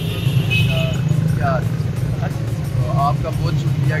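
Busy street traffic, with motorcycles and cars running past in a steady low hum under voices.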